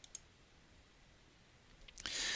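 A single short computer-mouse click just after the start, then near silence.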